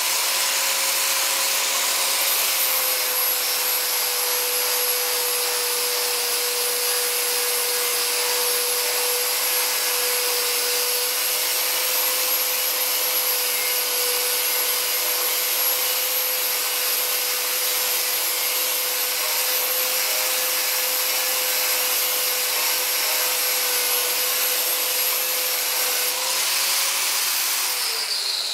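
Angle grinder running steadily as its disc grinds the folded edge off a car door skin, a high whine over a hiss. Its pitch dips slightly when the disc is pressed on about two seconds in and comes back up when it is lifted near the end, and then the grinder winds down.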